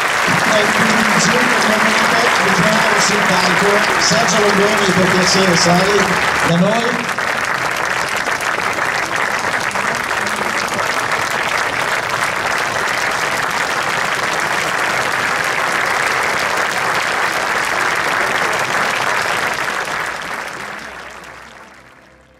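A large audience applauding for about twenty seconds, with voices heard over the clapping for the first six seconds or so. The applause dies away near the end.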